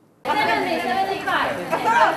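A brief silence, then a group of young people chattering, many voices talking over one another in a room.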